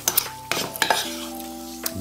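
A metal spoon clinking and scraping in a metal frying pan as pan juices are scooped up, with a few sharp clicks, over soft background music holding a steady chord.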